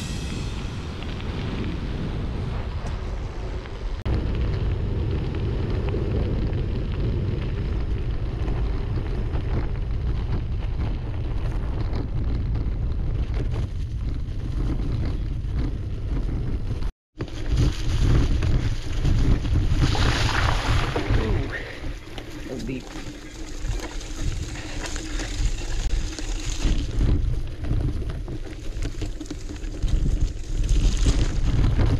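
Wind buffeting the microphone of a camera on a moving gravel bike, a steady low rumble. The sound cuts out briefly about halfway through and comes back louder and gustier.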